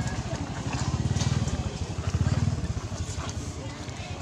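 Motorcycle engine running nearby, a low pulsing rumble that swells twice and then eases off.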